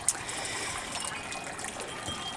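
Small birdbath fountain trickling and bubbling steadily, with one sharp click just after the start.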